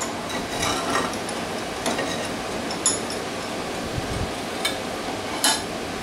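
Handling noises as a ceramic tile is set and clamped upright in a steel bench vise: a few scattered light knocks and clinks over a steady hiss, with no saw running.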